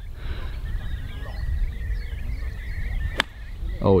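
A single sharp strike about three seconds in: a nine-iron bunker shot, the club cutting through the sand and hitting the ball. Wind rumbles on the microphone throughout.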